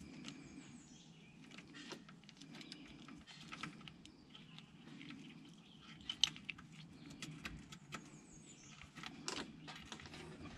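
Faint, irregular metallic clicks of a ratchet wrench and hex bit working loose a differential drain plug, with a sharper click about six seconds in and another near the end.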